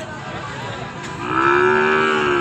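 One long moo from cattle, starting about a second in and still sounding at the end, its pitch rising slightly at the start before holding steady.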